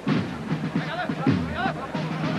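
Music with drums from a procession band, heard over the live broadcast, with voices mixed in.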